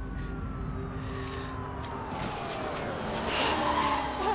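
Police car siren winding down, its tone falling slowly in pitch over about three seconds above a steady lower drone.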